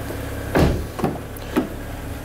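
Rear passenger door of a 2011 BMW 328i sedan being opened: a clunk of the handle and latch releasing about half a second in, then two lighter clicks as the door swings open.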